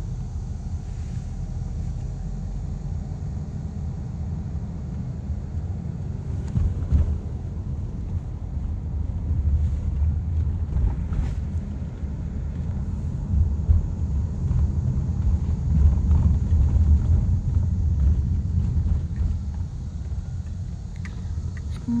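Low, steady road and engine rumble heard inside a moving car's cabin, growing louder through the middle, with a few faint clicks.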